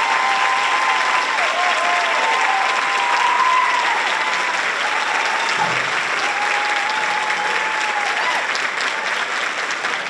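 Audience applauding steadily, with cheering voices held over the clapping, easing off slightly near the end.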